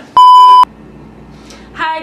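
A loud censor bleep: one steady single-pitch beep lasting about half a second, switching on and off abruptly, laid over a word to blank it out.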